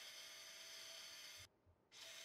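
Near silence: a faint steady hiss of room tone, cutting to dead silence for a moment near the end.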